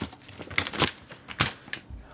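Paper instruction manual being unfolded and handled: a few sharp paper crinkles and rustles, the loudest just under a second in and again about a second and a half in.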